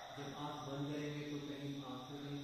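A man's voice holding one steady, drawn-out vowel at a level pitch for about two seconds, like a long hesitant "uhh" or hum.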